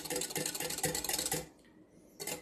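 Wire whisk beating eggs and melted butter in a glass measuring jug, its wires clicking rapidly against the glass. The whisking stops about a second and a half in.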